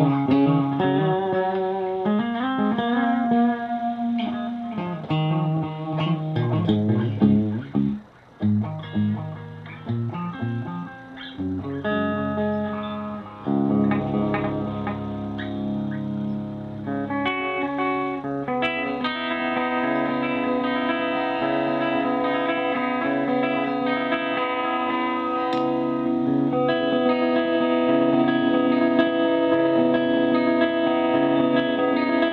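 Clean electric guitar played through a Rebote 2.5 delay pedal, an analog-voiced digital delay. It plays quick single-note lines for the first dozen seconds or so, then ringing chords that sustain and layer over one another.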